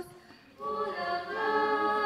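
Two women singing a hymn into a microphone with no instruments heard. They break off briefly between phrases just after the start, then go on with long held notes.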